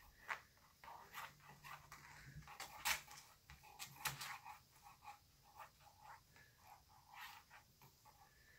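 Faint rustles and a few soft taps from a feather wand toy being swished about as kittens paw at it.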